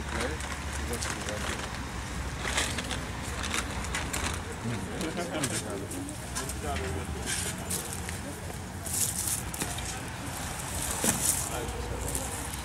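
Indistinct chatter of a small group of people, with short scraping and hissing bursts every second or two, louder near the end, from a steel shovel digging soil and sifting it through a wire mesh screen.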